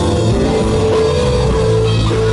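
Blues-rock band playing live and loud: electric guitar lead over bass guitar, keyboards and a drum kit, with one long held note from just after the start to near the end.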